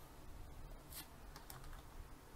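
Faint keystrokes on a computer keyboard, a few separate key presses, mostly in the second half.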